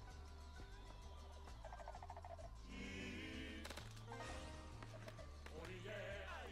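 Esqueleto Explosivo 2 slot game's background music, fairly quiet, with a bass line stepping from note to note, and short game sound effects over it as skull symbols drop and pay out small wins.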